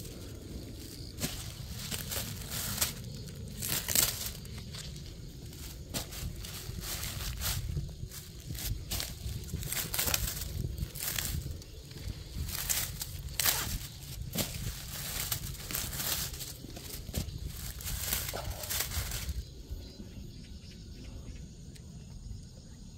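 Irregular crinkling and rustling of black plastic mulch film and sweet corn leaves as a hand works at the base of the corn plants, snapping off side shoots. The crackles die down near the end.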